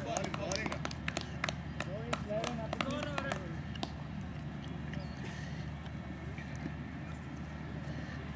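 Distant voices of cricket players calling across the field, with a quick run of sharp clicks over the first three seconds or so. After that it settles to a quieter, steady outdoor background.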